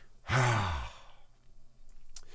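A man's audible sigh: one breathy exhale with a short, falling voiced tone, lasting under a second, followed by quiet room tone.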